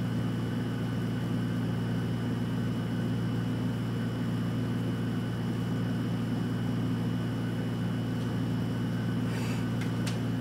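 Steady low hum with a thin, steady high-pitched tone over it: constant room background noise. There is a faint brief rustle near the end.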